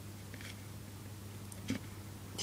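A single sharp light click near the end, with a couple of fainter ticks about half a second in, over a steady low hum.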